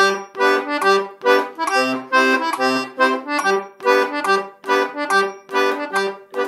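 DG melodeon (two-row diatonic button accordion) playing a brisk passage of short, detached notes over low bass notes, with a clear one-two pulse.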